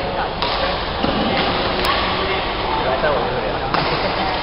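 Voices chattering in a badminton hall, with two sharp racket strikes on a shuttlecock, about half a second in and near the end.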